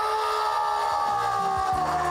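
A man's long, drawn-out scream, held on one high note and sagging slightly in pitch. About a second in, music with low bass notes starts under it.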